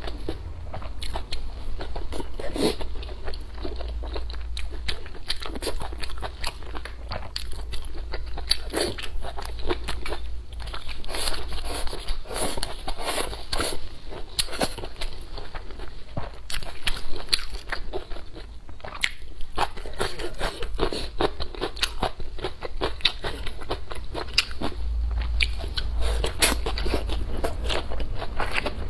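A person chewing and biting food (pork ribs and green chili peppers) close to a clip-on microphone: a continuous run of crunches and small clicks.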